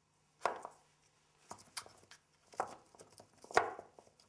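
Small picture cubes being set down and shuffled on a wooden tray: about five separate knocks with light sliding between them. The loudest knocks come about half a second in and near the end.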